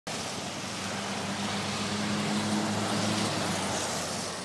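Steady rushing noise with a faint low hum underneath, starting abruptly and holding even throughout.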